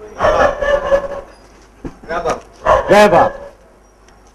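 A man's voice in three short bursts with pauses between them: speech only.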